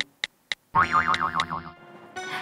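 Two short clicks, then a comic 'boing' sound effect, a springy tone lasting about a second whose pitch wobbles up and down about four times before it cuts off suddenly.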